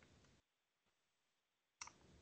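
Near silence over an online meeting's audio line, broken by a faint sharp click at the start and another near the end, each fading within about half a second, with a tiny tick between them.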